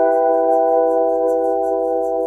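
Downtempo electronic music: a held chord of ringing, bell-like tones slowly fading, with a soft high ticking about four times a second above it.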